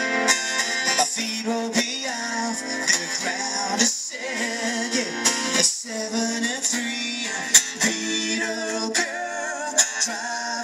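Live acoustic duo playing a pop song through a PA: strummed acoustic guitars, with a vocal line over them.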